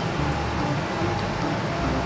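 Steady ambient background noise, a low even hum with a few soft low rumbles and no distinct event.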